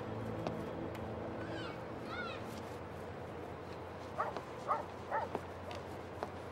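A dog barks three short times, about half a second apart, near the end. Before that come a couple of high chirps.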